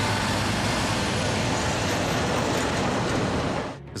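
Heavy multi-axle military tank-transporter truck driving past on a dirt road: a steady low engine tone under loud, even tyre and road noise, cutting off suddenly just before the end.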